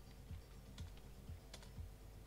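Computer keyboard keys being typed, a few faint clicks, over a faint low pulse repeating about twice a second.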